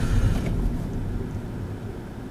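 Car interior noise, a low engine and tyre rumble, fading steadily as the car slows to a stop.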